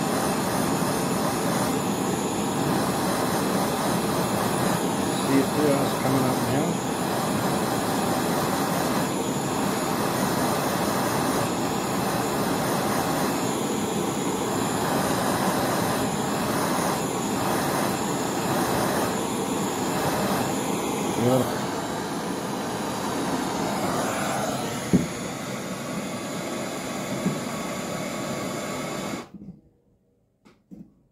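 Gas torch flame running steadily as it heats a hardened steel rod for tempering, cutting off suddenly near the end.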